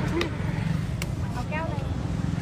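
Steady low rumble of road traffic on a street, under the voices, with two sharp clicks about a quarter second and a second in.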